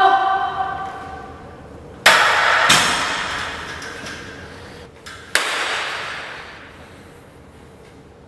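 A drawn-out shout for help fades out, followed by three sudden loud metal crashes from a loaded barbell and its weight plates, two close together about two seconds in and one near the middle, each ringing out for a second or two.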